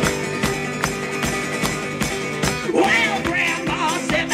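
Live acoustic guitar strummed hard over a steady percussive beat, about two to three strokes a second, with a higher melody line that bends in pitch coming in near the end.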